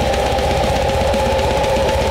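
Blackened death metal played instrumentally: distorted guitar holding a sustained chord over fast, dense drumming.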